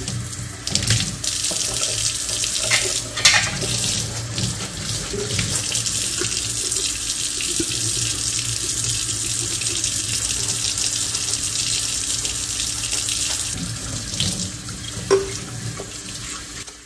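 Kitchen faucet running steadily into a stainless steel sink as a pitcher is rinsed and scrubbed under the stream by hand. A few short knocks of the pitcher against the sink or faucet come about three seconds in and again near the end.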